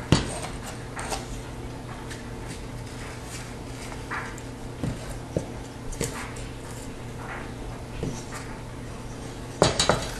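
A piece of sheetrock being handled on a plywood board: scattered knocks and clicks as it is set down, tipped and tapped, the loudest right at the start. A quick cluster of sharp cracks near the end as the gypsum core is snapped along a line to fold the patch. A steady low hum runs underneath.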